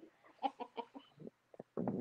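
A woman's quiet, breathy laughter in short spaced pulses, fading out after about a second and a half.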